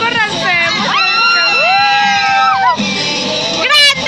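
A group of young people's voices yelling and shrieking, with a long, high held cry in the middle and a short sharp noise near the end.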